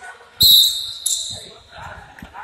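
Basketball dribbled on a hardwood gym floor. About half a second in comes a loud, high, steady squeal that lasts about half a second and is the loudest sound.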